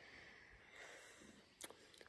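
Near silence: faint outdoor background with a single soft click about one and a half seconds in.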